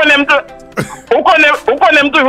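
A man talking, with music underneath and a short break in his speech a little before the first second.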